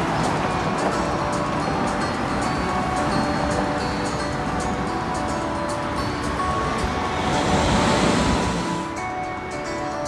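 Background music over steady street traffic noise. Late on, a car passes, its noise swelling and then fading.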